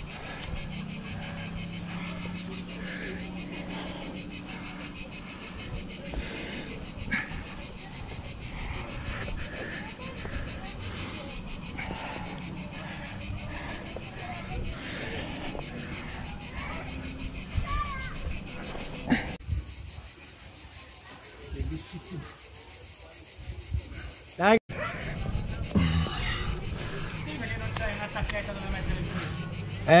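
A steady, high chirring of insects, with close rubbing and scraping as a climber's hands and body move over the rock. A short rising sound cuts in a few seconds before the end.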